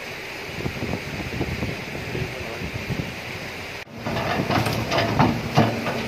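Hydraulic excavator working at a canal channel: its diesel engine runs under a steady rushing hiss of wind or flowing water. The sound gets louder from about four seconds in, with irregular knocks and scrapes.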